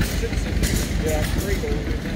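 A small vintage John Deere tractor's engine runs steadily, turning a flat drive belt off its belt pulley.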